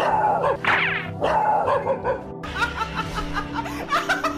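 Background music with a dog barking and yelping over it, the loudest yelp near the start.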